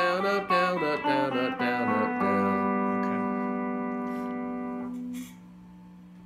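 Stratocaster-style electric guitar picked one note at a time in a quick scale run with alternating down and up strokes. About two seconds in, a last note rings out and slowly fades, then is cut off about five seconds in.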